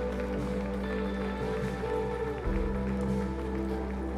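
Soft, slow worship-band music: sustained keyboard chords held over a low bass note, with the chord changing about two and a half seconds in.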